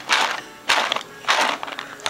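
Paintballs rattling inside a Dye Rotor hopper fitted with a Lightning Load 2 speedfeed as it is shaken upside down in three quick shakes about half a second apart. The speedfeed holds the balls in.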